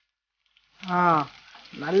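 Chicken gravy sizzling and bubbling in a frying pan as it is stirred with a wooden spatula, starting about half a second in. A woman's voice calls out briefly over it and begins speaking near the end.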